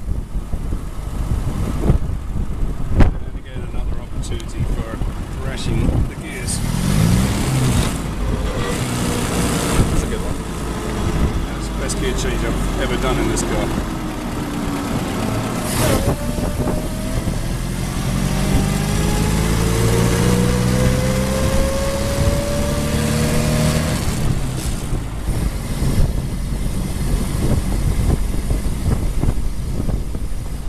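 1924 Bullnose Morris Cowley's four-cylinder engine driving the open car along the road, its pitch falling for several seconds, then rising again as it speeds up after a sharp knock about halfway, over road and wind noise.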